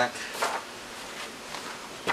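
Large sheets of drawing paper rustling once as a page is turned and a picture lifted out, about half a second in.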